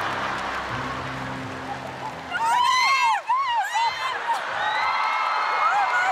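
Studio audience applauding over music, then breaking into shrieks and laughter about two seconds in, with drawn-out high-pitched cries near the end.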